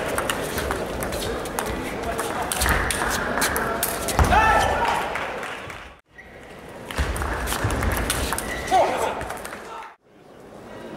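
Table tennis ball clicking sharply off bats and table in quick rallies, over the murmur of voices in a large hall. A voice calls out loudly about four seconds in and again briefly near the end. The sound cuts out for a moment about six seconds in.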